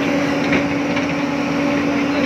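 JCB excavator's diesel engine revved up and held, with a steady high whine over the engine noise as the machine is worked from the cab.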